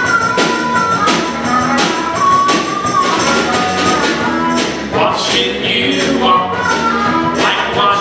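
Acoustic Americana band playing live: strummed acoustic guitars under a steady tambourine beat of about three strokes a second, with long held melody notes from a harmonica, and singing coming in about halfway.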